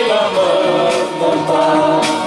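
A mixed group of men and women singing a Christian song together through microphones, with electronic keyboard accompaniment.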